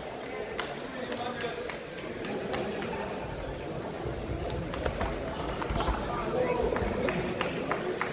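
Indistinct chatter and calls from many voices across a large sports hall, with scattered sharp knocks.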